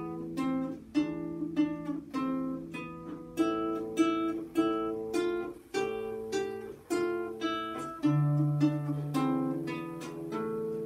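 Classical guitar played fingerstyle: a melody of single plucked notes, about two a second, over held bass notes. A louder low bass note comes in about eight seconds in.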